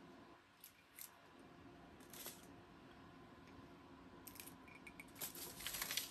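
Faint crinkling and crackling of butcher paper and heat-resistant tape being peeled off a freshly pressed ceramic mug. There are a few soft ticks at first, and the rustling gets busier over the last two seconds.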